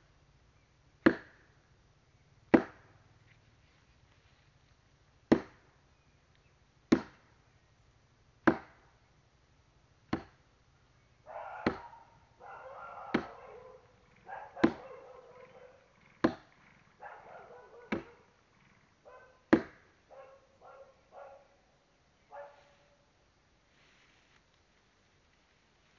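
Firewood being chopped by hand with a bladed tool: about a dozen sharp chops, roughly one every second and a half. Through the second half a rougher, scratchier noise fills the gaps between chops, and the chopping stops near the end.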